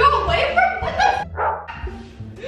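High-pitched young women's voices shrieking and exclaiming in short bursts, over a steady low hum.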